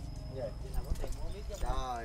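Faint voices of people talking in the background, over a low steady hum.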